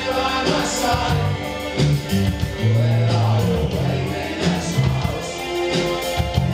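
Live band playing a synth-rock song at full volume: pulsing bass notes, steady drum beats and a lead vocal, heard from the audience in a theatre hall.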